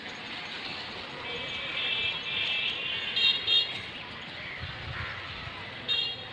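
Street traffic noise with vehicle horns honking repeatedly, a longer stretch of honking followed by two loud short honks about halfway through.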